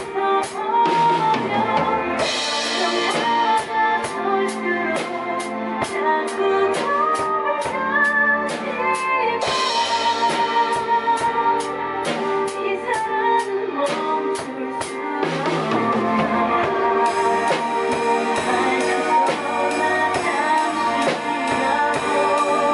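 Drum kit played in a steady beat along to a recorded ballad track, with crash cymbal swells about two seconds in and again near ten seconds.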